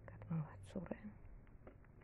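Faint, light clicks of a metal knitting needle working yarn, with two short murmured syllables from a soft, whispery voice in the first second.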